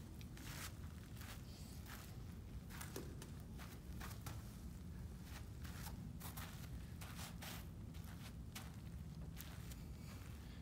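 Faint, irregular footsteps and light knocks on artificial turf over the steady low hum of a floor fan.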